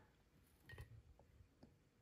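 Near silence, broken by a few faint, light clicks as a plastic ruler is shifted against a ceramic tree-shaped wax warmer.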